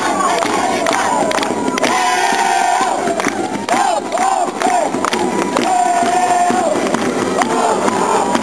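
A group of folk dancers' voices calling out together over crowd noise. There are two long held cries and a few short rising-and-falling whoops in between.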